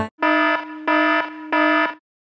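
Alarm-style warning beep sound effect: three beeps of one steady, harsh pitch, each about half a second long.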